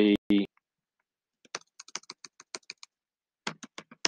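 Typing on a computer keyboard: a run of quick keystrokes about a second and a half in, a short pause, then a few more near the end.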